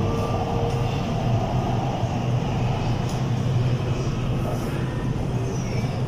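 Steady running noise inside a moving MRT Kajang Line metro train: an even low hum and rumble of the car running along the track.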